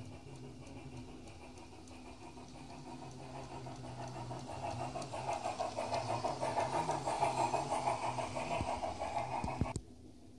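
G-scale garden railway locomotive and its wagons running along the track, the whir of the motor and gearing and the rattle of wheels on rail growing louder as the train approaches and passes close by, then cutting off suddenly near the end.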